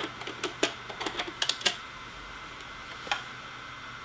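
Computer keyboard being typed on: a quick run of key clicks for about a second and a half, then a single further click about three seconds in.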